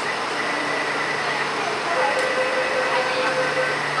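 Taipei MRT train running, heard from inside the carriage: a steady rumble and hiss with a high whine held throughout, joined by two more steady tones about halfway through.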